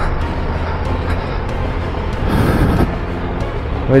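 Triumph Tiger 1200 Rally Pro's three-cylinder engine running steadily in second gear, with tyres rumbling over a gravel track.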